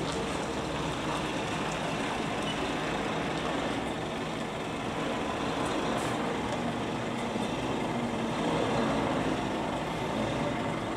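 Diesel engine of an articulated tanker lorry running steadily as it drives slowly across a yard and turns.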